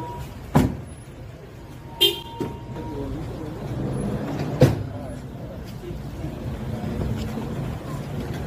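A minivan's doors shutting, two sharp knocks about half a second and four and a half seconds in, over a running vehicle and voices. A short high beep sounds about two seconds in.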